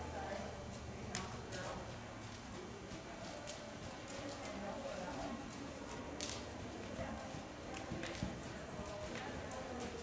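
A horse's hooves stepping through deep arena sand as it moves on a lead line: irregular footfalls with a few sharper scuffs.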